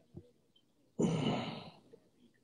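A man sighing into a close microphone: one breathy exhale about a second in that fades away.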